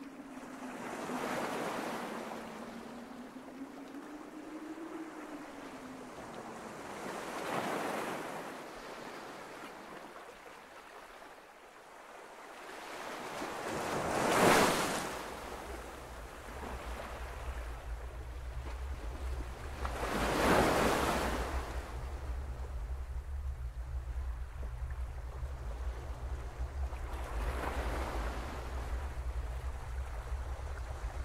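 Slow swells of rushing, surf-like noise, one about every six seconds, the loudest just before the midpoint. A faint wavering tone sounds over the first few seconds, and a steady low drone comes in about halfway and stays under the later swells.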